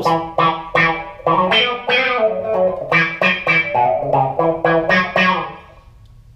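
Electric guitar played through the auto-wah of a Boss ME-70 multi-effects unit: a run of picked notes, about three a second, each swept by the wah filter. The attack is turned up, so light picking is enough to open the wah. The notes die away near the end.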